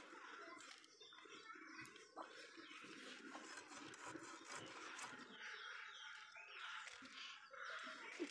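Faint cutting of a rohu fish on an upright boti blade: soft scraping with a few small clicks over a quiet background.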